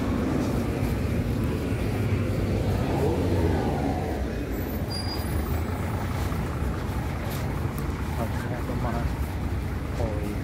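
Road traffic going by: a steady rumble of cars on the avenue, with one vehicle passing close about three seconds in, its engine note sliding in pitch as it goes by.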